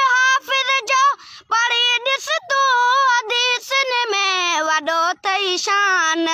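A boy singing a Sindhi devotional song unaccompanied, in a high voice with long, wavering held notes and ornamented runs. There is a brief breath about a second in, and the melody steps lower over the last two seconds.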